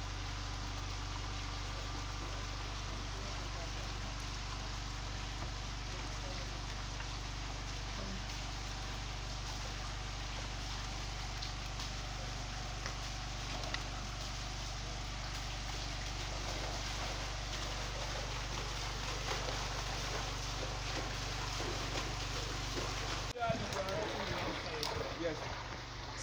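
Water jetting from a pipe outlet into a concrete fish pond: a steady splashing hiss over a low steady hum. It cuts off abruptly near the end.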